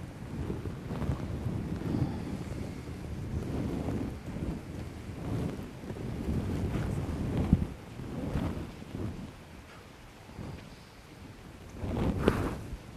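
Low, uneven rumbling noise without clear speech, peaking briefly about seven and a half seconds in.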